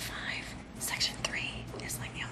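Soft, breathy speech close to a whisper, with the words not made out, over a low steady hum.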